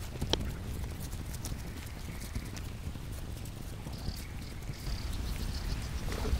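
Hands patting and pressing loose rice-husk and coconut-coir potting mix around a stump in its pot: a run of small, irregular taps and rustles.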